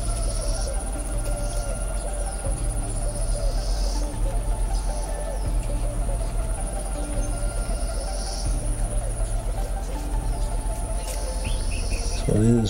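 Steady high-pitched insect shrilling over a low hum that pulses in a regular beat about every second and a half.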